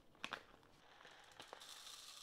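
Coriander seeds poured from a plastic bag into a plastic bowl: a few light clicks as the bag is handled, then a faint, steady high hiss of seeds streaming into the bowl starting near the end.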